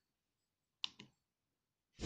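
Two quick clicks close together about a second in, otherwise near silence: buttons pressed on the keypad of an RF Explorer handheld spectrum analyzer.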